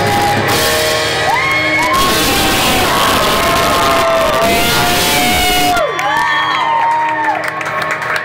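Live rock band with drums, electric guitar and keyboard playing a loud final stretch that stops abruptly about six seconds in; the crowd then whoops and cheers.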